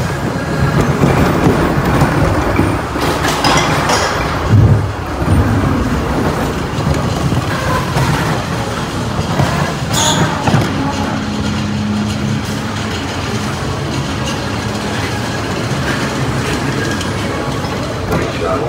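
Roller coaster train running fast along its steel track, wheels rumbling and rattling, with a few sharp jolts and a steady low tone partway through.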